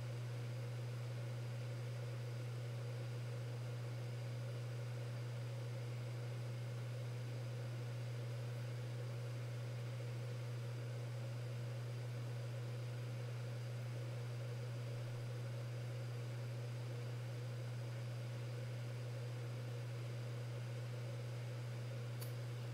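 A steady low hum with a faint even hiss underneath, unchanging throughout, with no other sounds.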